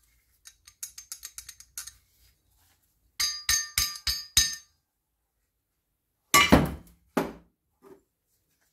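Old two-stroke moped engine parts, a crankshaft half with its connecting rod, handled on a metal-strewn workbench: a quick run of light rattling clicks, then five sharp ringing metallic clinks about a third of a second apart. A heavy thunk follows, then a lighter knock, as a part is set down on the bench.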